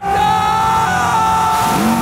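Speedboat engine running flat out, a loud steady whine that steps in pitch, over a haze of rushing water and wind noise; a deeper tone joins near the end.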